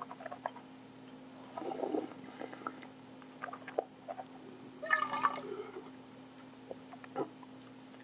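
Liquid being poured and sloshing between a stainless steel cup and a wine glass, loudest about five seconds in, with a few light clinks of glass and metal scattered through.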